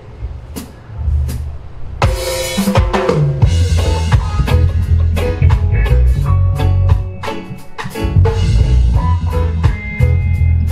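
Live reggae band kicking off a song: two sharp clicks, then about two seconds in the full band comes in with a cymbal crash and settles into a steady groove of drum kit, heavy bass and electric guitars.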